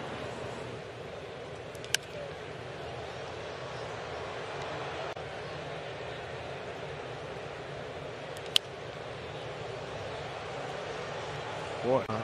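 Ballpark crowd murmuring steadily, with two sharp bat cracks about six seconds apart as two pitches are fouled off.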